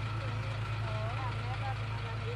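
Truck engine idling with a steady low hum, faint voices talking underneath.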